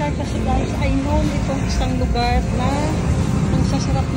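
Indistinct talking over a steady low rumble of road traffic.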